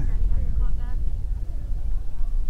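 A low, steady rumble, with a few faint mumbled words about half a second to a second in.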